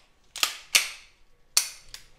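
Slide of a freshly cleaned and oiled Beretta 92FS pistol being racked by hand: sharp metallic clacks as it is pulled back and snaps forward, twice in quick succession.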